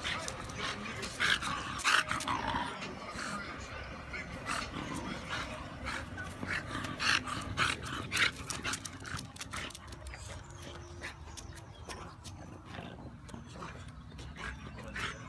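A bulldog-type dog making short, separate vocal sounds again and again while it runs about, the loudest in the first half.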